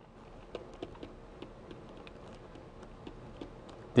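Stylus writing on a pen tablet: faint, irregular ticks and taps as letters are written.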